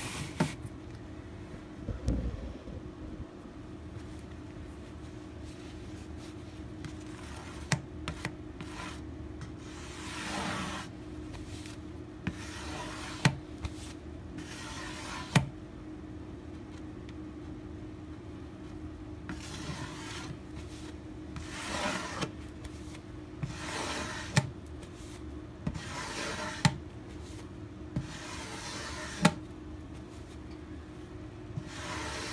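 Plastic squeegee dragged across the wet epoxy pore-fill coat on a guitar back: a rubbing swish every two seconds or so from about ten seconds in, with sharp ticks between strokes, over a steady low hum.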